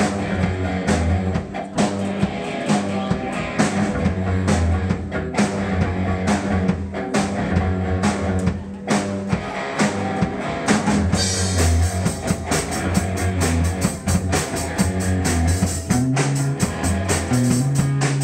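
Live rock band playing an instrumental intro: electric guitar, bass guitar and drum kit in a steady driving beat. The drumming gets brighter and busier about two-thirds of the way through.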